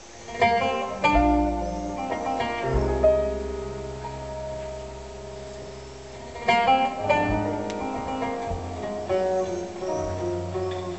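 Live music begins about half a second in. Plucked oud notes and phrases ring out over deep, sustained low notes.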